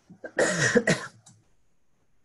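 A person coughing, two quick bursts of throat-clearing cough about half a second in.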